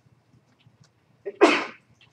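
A person sneezing once, a single sharp burst about a second and a half in, preceded by a few faint clicks.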